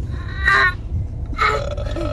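Two short vocal sounds from a young child, about half a second and a second and a half in, over the steady low rumble of a moving car's cabin.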